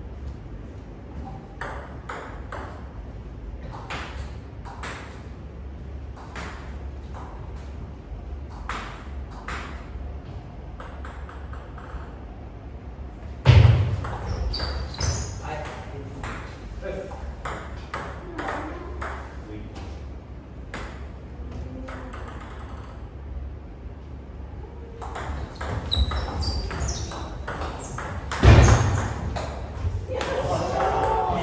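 Table tennis rallies: the ball clicking off bats and table in quick runs of sharp hits, broken by pauses between points. Two loud sudden bursts stand out, about halfway and near the end, with short voices after them.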